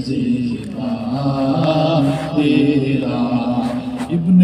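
A man chanting a devotional Urdu verse (naat) in long, drawn-out, wavering notes.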